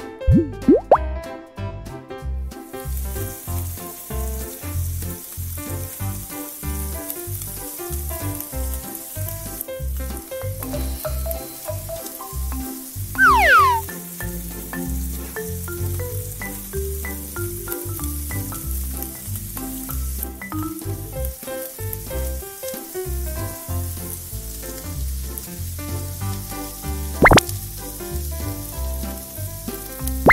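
Upbeat background music with a steady beat, over crepe batter sizzling in a miniature frying pan; the sizzle starts about two seconds in and continues. A short descending sound effect comes about midway, and a sharp click near the end.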